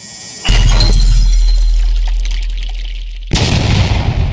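Logo intro sound effects: a rising swell, then about half a second in a heavy impact with a deep drone that slowly fades, and a second crash with a shattering quality just past three seconds.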